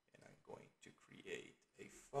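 Very faint, mumbled speech, a man talking under his breath in short broken bits; otherwise near silence.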